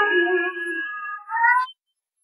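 A cappella singing voices with no instruments: a held sung note fading away, then a short upward vocal slide about one and a half seconds in that cuts off suddenly.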